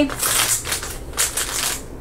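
A shiny plastic-foil blind bag being torn open and crinkled by hand, in several short bursts of rustling.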